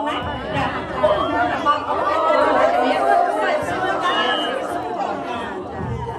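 Many women's voices talking over one another at once: lively group chatter in a large hall.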